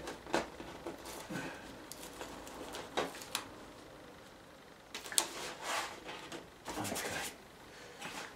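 Handling noises from a watercolour painting on its board being shifted up on an easel: scattered light knocks, scrapes and paper rustles.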